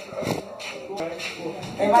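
Indistinct talk from a small group of people, fairly quiet at first, with louder speech starting near the end.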